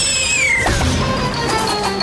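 A whistle-like cartoon sound effect falling in pitch, sliding down and ending about half a second in, over background music that then carries on with steady held notes.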